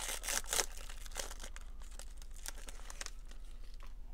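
Foil wrapper of a trading-card pack crinkling as it is pulled open, loudest in the first second, followed by fainter rustles and clicks of the cards being handled. A steady low hum runs underneath.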